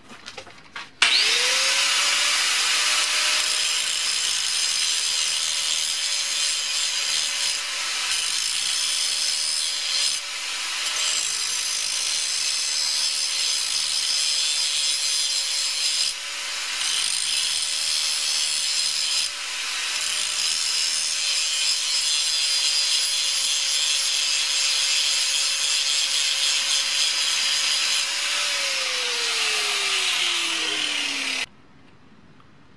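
Angle grinder spinning up about a second in, then grinding a forged O1 tool-steel drill rod clamped in a vise, with a steady motor whine that dips briefly a few times as the disc bites. It winds down with a falling whine near the end.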